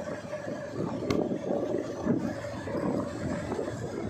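Motorcycle engine running at a steady pace along a dirt track, mixed with wind noise on the microphone. There is one short tick about a second in.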